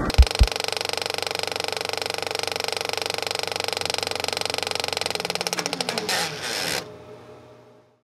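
Film projector sound effect: a rapid mechanical clatter with a steady whirr that slows and winds down with a falling pitch about six seconds in, then fades out. Two low thumps from the end of the music come first.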